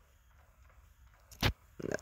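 Near silence, broken about one and a half seconds in by a single sharp click.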